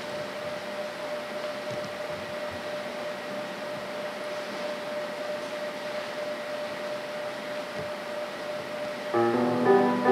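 Steady room noise with a faint constant hum, then, about nine seconds in, a Yamaha digital keyboard begins playing sustained piano notes, much louder than the room.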